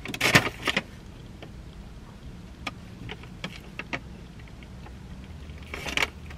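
Paper donut bag rustling and crinkling briefly about a quarter-second in, then scattered faint clicks over a steady low hum, with a second rustle just before the end.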